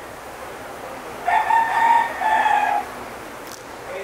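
A rooster crowing once, starting about a second in and lasting about a second and a half, with a brief dip partway through, over a steady background rumble.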